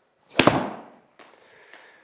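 A golf wedge strikes a ball off a hitting mat with one sharp crack a little under half a second in, fading quickly. Less than a second later there is a softer hit as the ball lands in the simulator's impact screen.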